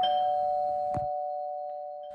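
A chime with two steady, close tones that rings out and fades slowly, with a brief click about a second in.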